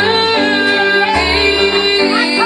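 A woman singing a gospel song into a microphone, holding long notes, with electronic keyboard accompaniment.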